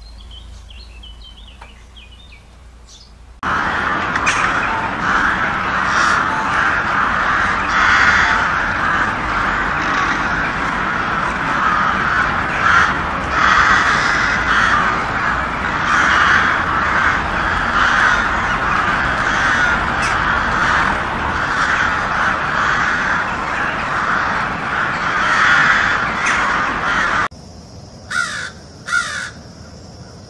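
A flock of crows cawing together in a loud, continuous din of overlapping calls that starts abruptly a few seconds in and cuts off suddenly near the end. It is followed by two separate caws.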